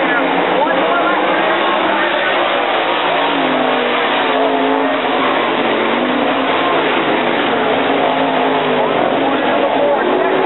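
Sprint car engines racing on a dirt oval, loud and continuous, their pitch rising and falling as the cars go through the turns.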